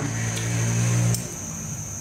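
A steady low hum that cuts off suddenly with a faint click about a second in, leaving quiet room noise.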